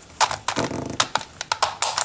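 A plastic Pyraminx Crystal twisty puzzle being turned by hand: a rapid, irregular run of plastic clicks and clacks as its faces rotate and pieces snap into place.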